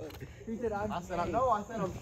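Men's voices exclaiming and talking, too indistinct for words to be made out.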